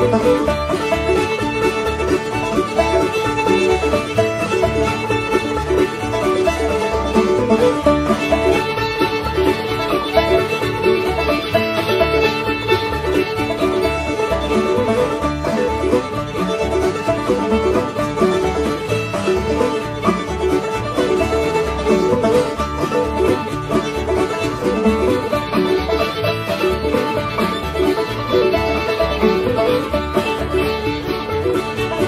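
String band playing an instrumental fiddle tune, with fiddle, banjo, mandolin, guitars and bass together at a steady rhythm, heard from a digitised cassette recording.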